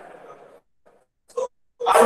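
A man's voice: talk trails off, then after a pause come a very short vocal sound and, near the end, a louder drawn-out vocal sound.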